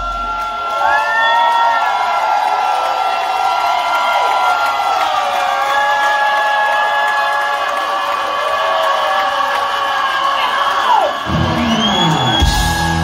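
Live hard-rock breakdown with the drums and bass dropped out: sustained high held notes bend over a cheering, whooping crowd. About eleven seconds in, the full band crashes back in.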